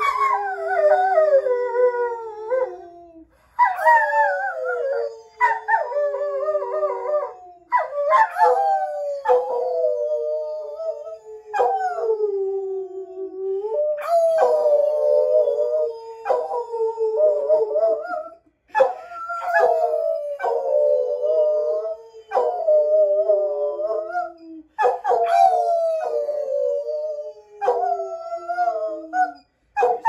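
A brindle dog howling in about ten long howls, each starting high and sliding down in pitch, with short breaths between them. A man howls along with it.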